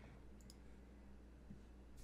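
Near silence with faint computer mouse clicks: a quick pair of clicks about half a second in, then a soft low thump a second later, over a faint steady hum.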